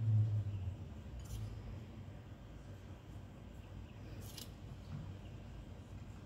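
Fingers pinching and sprinkling sugar over dough: two brief, faint, scratchy rustles, about a second in and about four seconds in, over quiet kitchen room tone. A short low hum sounds at the very start.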